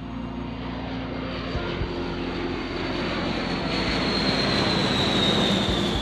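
Boeing B-52 Stratofortress's eight jet engines flying overhead: a steady rumble that grows louder, with a high whine that slowly falls in pitch and is strongest near the end.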